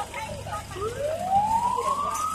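An emergency vehicle siren starts up about a second in, one tone rising steadily in pitch, with voices nearby at the start.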